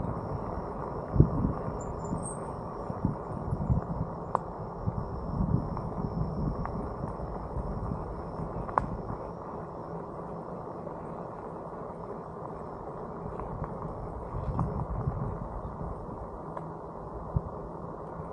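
Bike rolling along a gravel road: steady tyre and wind noise with irregular bumps and knocks from the rough surface, a few sharp clicks, and a faint high steady whine behind it.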